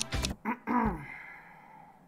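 A man's short sigh and low voiced murmur in the first second, then faint room tone.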